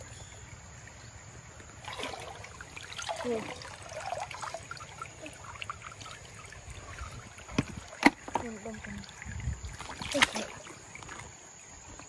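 Hands sloshing and splashing in shallow stream water while groping among roots for snails, broken by a few sharp knocks, the loudest about eight seconds in.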